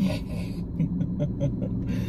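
Steady low hum of a car idling, heard from inside the cabin, with a few faint short clicks.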